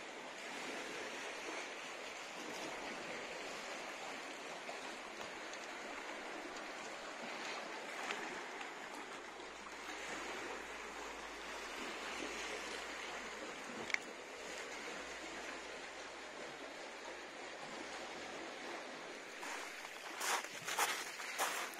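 Calm sea washing gently over a flat rocky shore, a soft steady wash, with one short tick about two-thirds of the way through.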